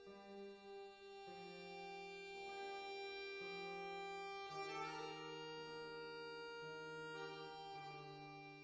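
Accordion playing held chords that change every second or so, with a guitar accompanying.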